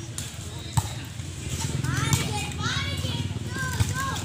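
Volleyball players calling and shouting, with two sharp slaps of a hand hitting the volleyball, one about a second in and one just before the end.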